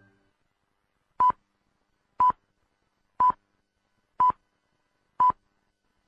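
Radio hourly time signal: five short, identical high beeps one second apart, counting down to the exact top of the hour.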